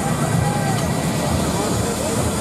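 Funfair din around a slingshot ride: a steady low rumble with crowd voices mixed in, and a faint short shout about half a second in.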